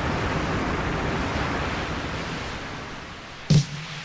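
Recorded rain sound effect opening a 1985 Cantopop track: a steady hiss of falling rain that slowly fades. A sharp drum-machine hit comes in near the end as the music starts.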